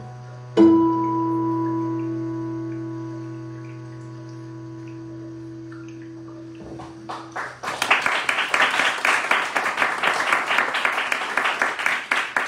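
A guitar note struck and left to ring out slowly over a low steady drone, as a piece of ambient guitar music ends. About seven and a half seconds in, the audience breaks into applause.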